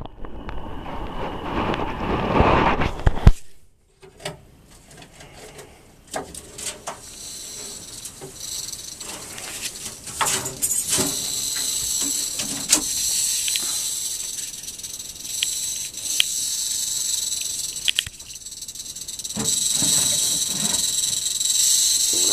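Eastern diamondback rattlesnake rattling its tail: a steady high buzz that starts about halfway through and grows louder near the end, the rattlesnake's warning of a disturbed, defensive snake. A few seconds of rustling handling noise come first.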